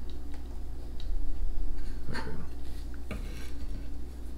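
Kitchen knife cutting through a chocolate-topped, jam-filled sponge biscuit, with scraping and a few light clicks of the blade against the table surface.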